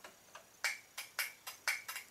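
A string of faint, sharp electrical clicks from a riding-mower engine's starter circuit, about three a second and a little uneven, as the circuit clicks on and off. The owner puts the engine being killed down to the missing seat safety switch.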